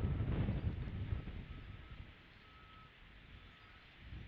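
Wind buffeting an outdoor nest-camera microphone as a low rumble that eases off about halfway through. Over it come faint short beeps at one steady high pitch, several times.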